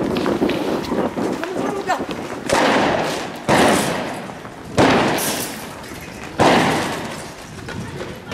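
Riot-control gunfire in a street clash: four loud bangs come from about two and a half seconds in, a second or more apart. Each trails off over a second or so in a long echoing hiss.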